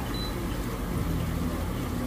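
Steady low mechanical hum of aquarium air pumps and filters running.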